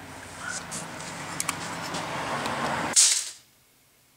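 Rustling and rubbing of styrofoam packing and plastic wrap being handled. A short, louder rustle about three seconds in, then the sound cuts off abruptly.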